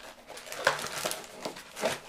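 Cardboard and paper rustling and crinkling as a card is pulled out of a cardboard box, with a couple of louder rustles, one about two-thirds of a second in and one near the end.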